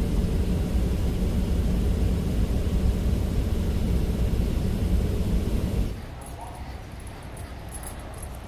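Airliner cabin noise: the steady low rumble of the jet's engines and airflow heard from inside the cabin, cutting off suddenly about six seconds in to a much quieter indoor hall ambience with faint clicks.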